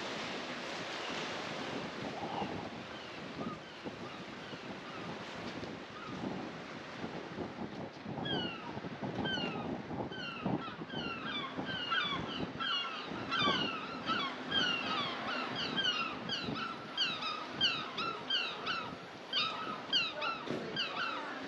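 Wind and lapping water along a harbour wall. From about eight seconds in, a rapid run of short, high-pitched, falling calls from an animal, several a second, grows louder toward the end.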